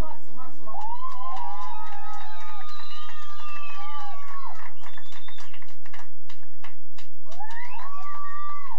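Several high voices holding long, wavering wordless notes that rise and fall like a siren. They last from about a second in to about halfway, then start again near the end, over many faint clicks.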